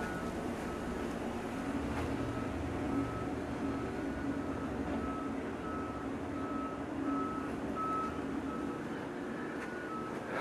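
A vehicle's reversing alarm beeping at one steady pitch, about two beeps a second, over a low, steady engine rumble.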